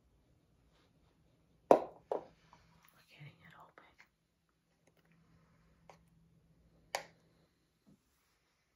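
Sharp plastic clicks and taps from a round Zyn nicotine pouch can being handled and its lid worked with the fingers. A few separate clicks, the loudest about two seconds in and another strong one near seven seconds.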